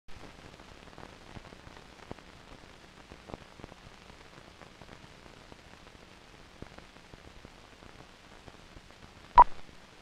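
Hiss and scattered faint crackle from an old 16mm film soundtrack running over the countdown leader. Near the end comes one short beep at about 1 kHz, the leader's sync 'two-pop'.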